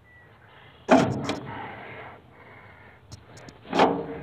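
Two sudden knocks, a sharp loud one about a second in that rings on briefly, and a smaller one near the end.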